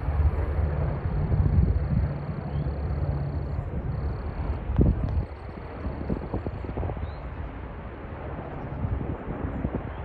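Wind gusting across the microphone outdoors, a heavy low rumble that drops off suddenly about five seconds in and then carries on more softly.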